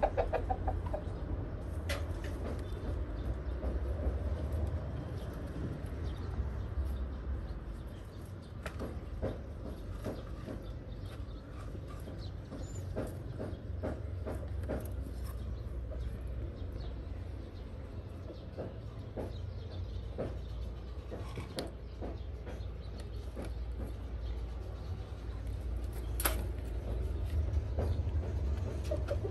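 Chickens clucking in the background over a steady low rumble, with scattered light clicks and taps.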